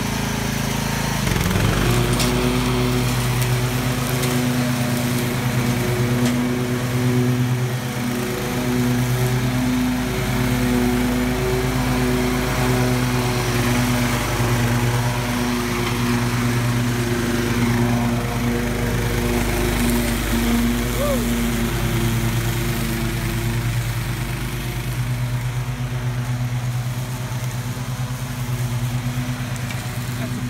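Toro zero-turn riding mower's engine running steadily while it mows tall grass, with a brief dip in its note about a second in.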